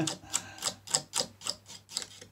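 Steady, regular ticking, about three to four sharp clicks a second, like a mechanism or clock.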